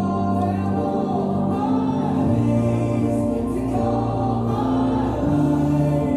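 Worship song: voices singing over held chords, the bass and chords changing about two seconds in and again near the end.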